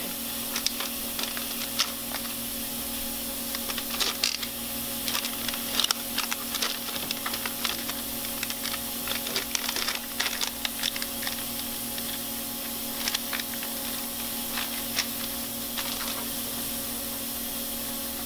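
Ultrasonic cleaner running its cleaning cycle: a steady hum with a hiss over it. Scattered light clicks and rustles come from instruments and a pouch being handled in rubber gloves.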